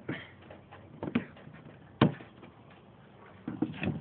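Plastic access cover in a pickup's front wheel-well liner being pried open with a trim tool: a few light clicks and knocks, then one sharp snap about two seconds in.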